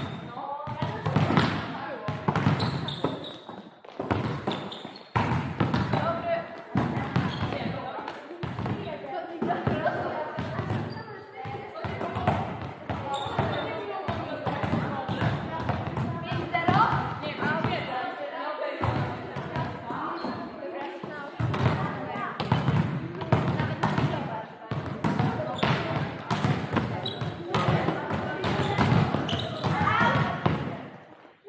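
Volleyball practice in a sports hall: repeated volleyball hits and bounces off hands and the floor, under a continuous hubbub of players' voices, all echoing in the hall.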